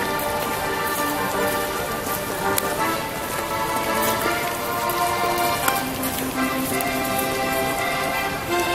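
Music with long held notes that change every second or so, over a steady hiss and scattered small clicks.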